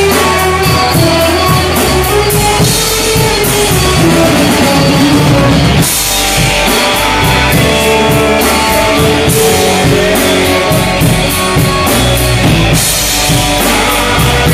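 Live blues band playing: electric guitar lines over bass guitar and drum kit, loud and steady, with a cymbal crash about every three and a half seconds.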